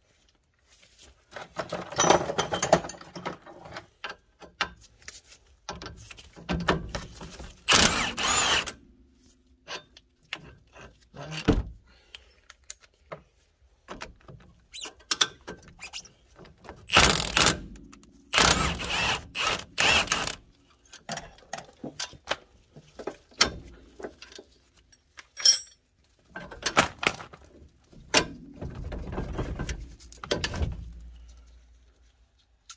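Socket tool undoing the two 17 mm strut-to-knuckle bolts on a Nissan Micra K11's front suspension, and the bolts being pulled out: irregular bursts of metallic clunking and rattling, with clicks and tool clatter between them.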